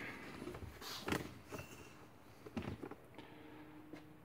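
Faint handling noise: a few short, soft knocks and rustles spread out over a few seconds, with a faint steady hum in the second half.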